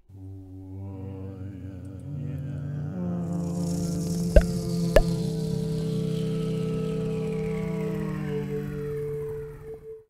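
Synthesized intro music: layered droning tones that build and step up in pitch, with a hiss sweeping in about three seconds in and two sharp hits half a second apart. A single held tone carries on and cuts off suddenly at the end.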